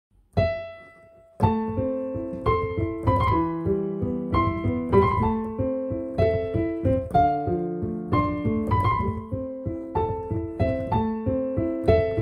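Piano keyboard played by hand: one single note, then about a second and a half in a steady flow of notes and chords, a new one struck roughly every half second.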